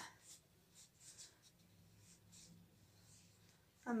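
Faint, soft scratching and rustling in a few brief strokes as a tube is handled and brought against bare skin.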